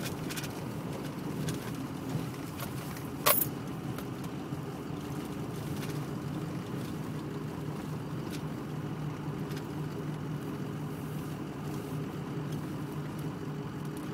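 Steady low engine and road rumble heard from inside a car driving slowly along a snowy farm lane, with a sharp click about three seconds in.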